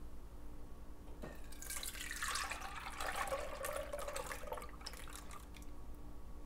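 Sweetened milk mixture poured from a glass measuring cup through a stainless steel mesh strainer into a bowl, splashing. It starts about a second in and tails off near the end.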